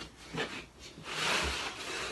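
A flat board sliding and rubbing over a work table: a light knock about half a second in, then a longer scraping rub from about a second in.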